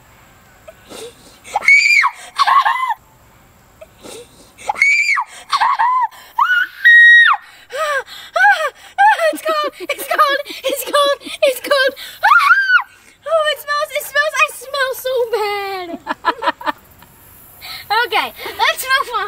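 A young girl shrieking and squealing in a string of high-pitched screams as soy sauce is poured over her head, with one held shriek about seven seconds in and a falling wail near the end.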